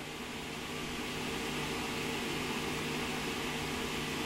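Steady low hum with an even hiss over it and no other event: room tone.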